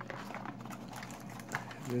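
Quiet handling of trading cards and packs: a few light taps and soft rustles.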